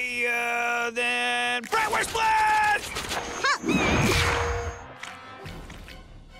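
Cartoon soundtrack: a drawn-out vocal sound held at one pitch for the first couple of seconds, then shorter vocal sounds and comic sound effects over music, with a noisy swish about four seconds in.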